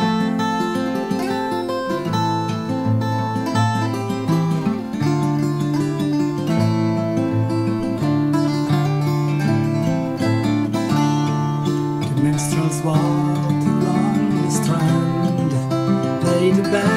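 Martin 000-42VS steel-string acoustic guitar fingerpicked in a continuous, flowing melodic passage, notes ringing into one another.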